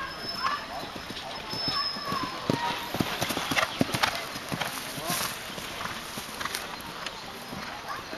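Hoofbeats of a grey horse cantering on grass turf, a run of dull thuds that grows loudest near the middle as the horse passes close, then fades.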